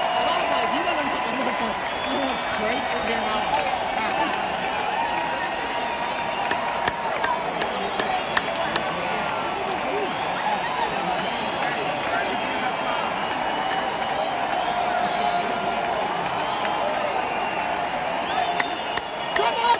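Large stadium concert crowd cheering and talking over one another, with scattered hand claps.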